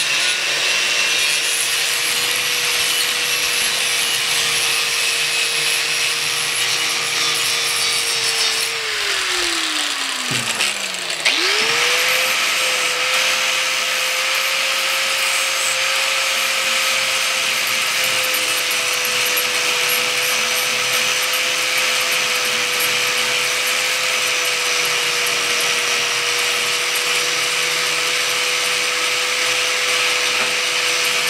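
Corded electric angle grinder with a wire wheel scrubbing a steel truck frame, the motor running at a steady pitch. About nine seconds in it is switched off and spins down, then a second later it is switched back on, runs up to speed and carries on scrubbing.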